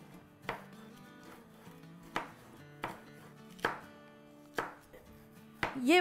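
Chef's knife slicing a red sweet pepper on a cutting board: six separate sharp taps of the blade meeting the board, spaced irregularly about a second apart.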